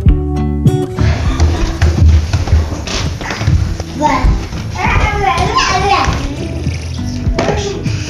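A toddler's high-pitched babbling and squealing, loudest from about four to six seconds in, over the room noise of a home video camera's microphone. Acoustic guitar music plays at the start and comes back near the end.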